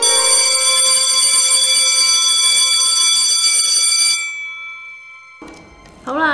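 Electric school bell ringing loudly and steadily for about four seconds, then stopping and dying away over about a second: the bell marking the end of the exam.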